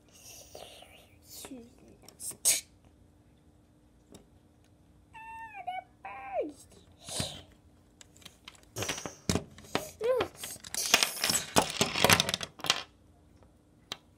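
Plastic Lego pieces and toys clicking and clattering as they are handled and knocked together. About five seconds in, a child's voice makes two short falling whistle-like sound effects. A denser run of clatter and scraping follows in the second half.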